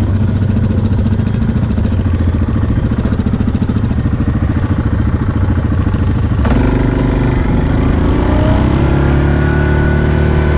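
Yamaha Grizzly 700 ATV's single-cylinder engine running at low revs with a rapid firing beat. About two-thirds of the way in the sound changes suddenly, and the engine's pitch then rises steadily as it picks up speed.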